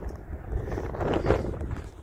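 Wind rumbling on the microphone, a steady low buffeting.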